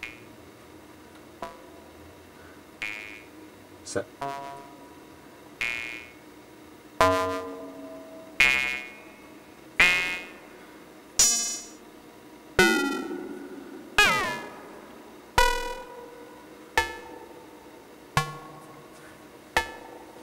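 Ring-modulated synthesizer tones from a eurorack bipolar VCA (Abstract Data Wave Boss), gated by an exponential envelope into short percussive hits, about one every second and a half. Each hit starts sharply and dies away quickly. The timbre changes from hit to hit as the modulator and carrier are tuned, and a few hits sweep in pitch.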